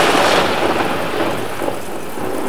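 Thunderstorm sound effect: a thunder rumble fading slowly over a steady hiss of rain.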